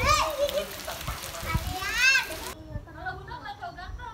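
Children shrieking and shouting at play in heavy rain: two high squeals that rise and fall, one at the start and one about two seconds in, over a steady hiss of rain. The rain hiss cuts off abruptly just past halfway, leaving quieter children's voices.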